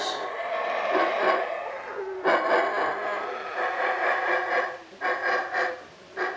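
Howler monkey howling: long, loud, rasping roars, broken by a short pause about two seconds in and another near five seconds.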